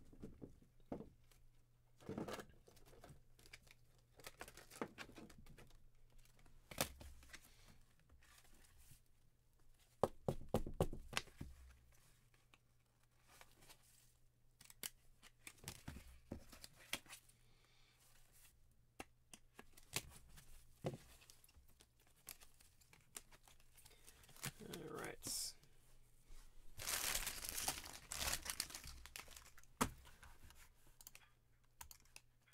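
Trading cards in plastic sleeves and top loaders being handled and set down on a mat: plastic rustling and crinkling with scattered light clicks, over a faint steady low hum. A longer stretch of rustling comes near the end.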